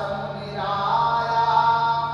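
A man chanting a devotional verse in a melodic voice through a microphone, ending on a long held note.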